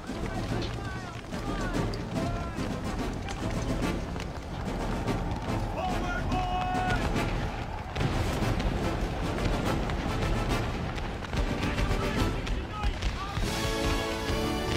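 Film battle soundtrack of Civil War musket fire, with many sharp shots throughout, and men shouting over film score music. The firing gets heavier and louder about halfway through.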